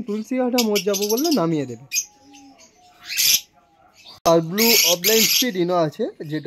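Caged conures and lovebirds squawking and chirping in short harsh bursts, two of them loudest, about halfway through and near the end. A voice talks under them in the first two seconds and again at the end.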